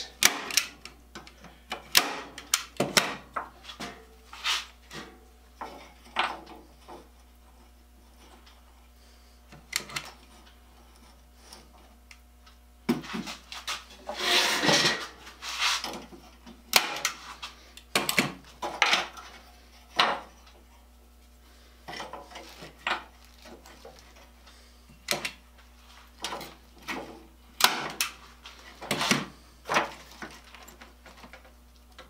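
Irregular clicks, taps and rattles of a steel wire rack and metal pieces being handled and set into a plastic-lined wooden tank. A longer rustling noise comes about fourteen seconds in.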